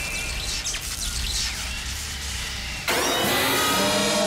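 Low rumbling background with faint high chirps; about three seconds in, soundtrack music with sustained chords starts suddenly and is louder.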